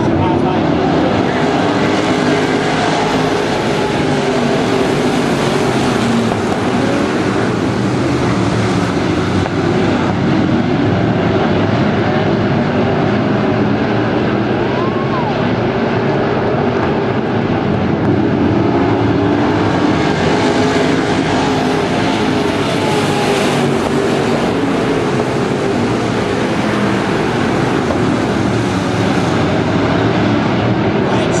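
A pack of dirt-track race cars running at speed, many engines sounding together, loud and steady.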